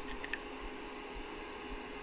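The Elegoo Mars resin printer's cooling fan running steadily, with a few faint light metal clicks in the first moments as an Allen wrench is set to the build platform's mount.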